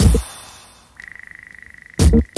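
A break in a house track: a last kick-and-bass hit at the start, its tail fading out as the beat drops away, then about halfway through a high electronic tone comes in, pulsing very fast like a trill, and holds steady until the beat returns.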